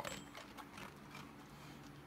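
A faint bell ring right at the start, followed by quiet scattered small clicks and rattles.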